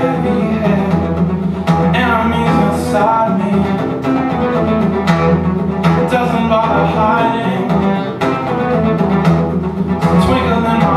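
Acoustic guitar strummed in an instrumental passage of a song, steady chord strokes over deep ringing bass notes.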